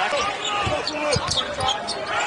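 A basketball dribbling on a hardwood court, a few bounces about halfway through, over arena noise.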